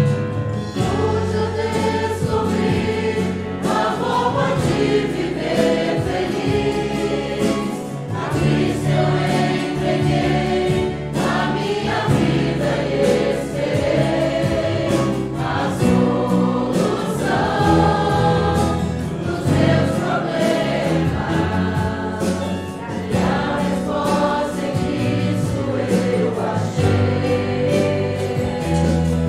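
A church congregation singing a Portuguese-language gospel hymn together, with instrumental accompaniment under the voices.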